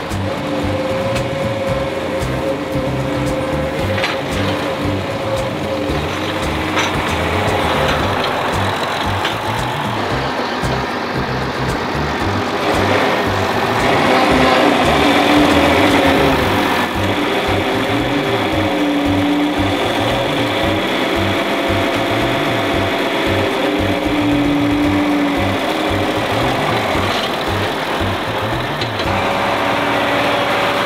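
Background music with a steady beat, with a John Deere 4020 diesel tractor engine running underneath as it loads round hay bales.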